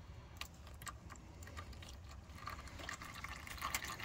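Used engine oil pouring in a stream from the oil-pan drain hole into a drain pan: a faint, steady splashing with a few small drip-like ticks, growing a little louder near the end.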